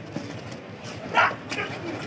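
Players and crowd shouting during a kabaddi raid and tackle, with one short, loud, high yell about a second in.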